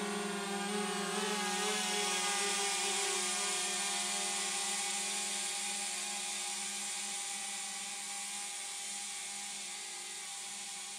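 DJI Mavic Mini drone's propellers buzzing in a steady multi-tone whine as it climbs. The pitch wavers briefly in the first couple of seconds, then the sound slowly fades as the drone gains height.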